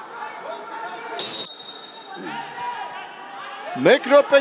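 A whistle blown once, a steady shrill tone held for about a second, over voices echoing in a large hall. A man's loud shout starts just before the end.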